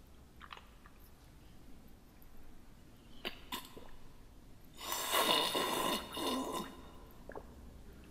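Quiet room tone with a few faint clicks, then, about five seconds in, a breathy human vocal sound lasting about two seconds.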